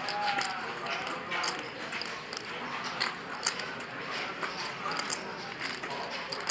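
Poker chips clicking at the table, light irregular clicks several times a second, over a faint murmur of voices.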